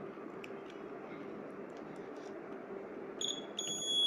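Low room noise, then about three seconds in the board's electronic buzzer switches on with a steady high-pitched tone. It stutters for a moment, then holds.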